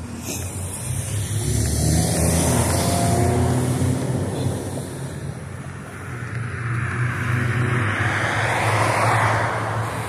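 Road traffic passing close by: a vehicle's low engine hum rises about a second and a half in, then tyre noise swells and peaks near the end as another vehicle goes by.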